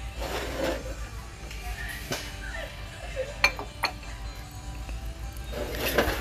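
Ceramic and glass dishes clinking against each other and the metal shelf as they are moved, a few sharp clinks with the loudest a little past the middle, over faint background music.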